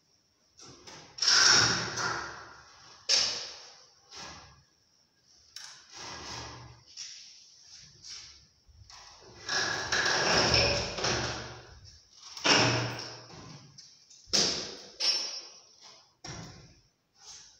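A wooden staircase being shifted and tipped over a floor opening: irregular knocks, thuds and scrapes of the timber against concrete. The loudest thud comes about a second and a half in, with a longer stretch of scraping and knocking around ten seconds in.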